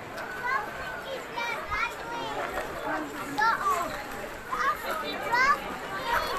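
Children's voices chattering and calling out in the background, high-pitched and excited, with no clear words.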